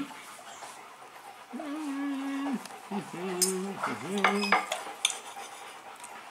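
Knife and fork clinking and scraping on a plate. A voice hums a long, level 'mmm' about a second and a half in, then a two-part 'mm-hmm' in the middle.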